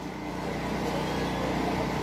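Steady low engine hum of a motor vehicle in the background, slowly growing louder.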